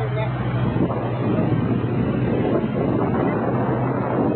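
A speedboat running at speed: a steady engine hum under the rush of wind and water, with wind buffeting the microphone.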